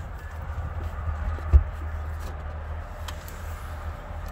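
A Jeep Wrangler's removable rear quarter glass panel being taken out by hand: faint handling ticks and one short knock about one and a half seconds in, over a steady low rumble.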